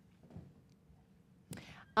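Near silence with faint room tone, then a woman's short, breathy intake of breath about a second and a half in.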